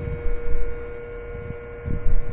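Karaoke backing track between sung lines: one steady electronic tone held without a break over a low rumble.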